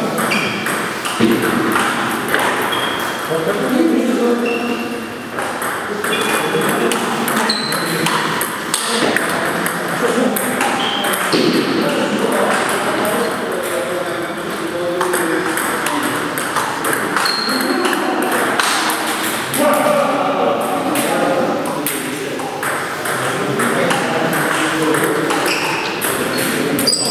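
Table tennis ball clicking and pinging off paddles and the table in rallies, with voices talking in the background.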